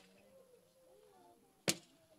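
Near silence of a small room with faint voices in the background, broken by one sharp click about three-quarters of the way through.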